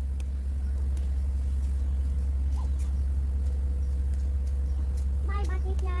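A steady low rumble with a few faint clicks over it.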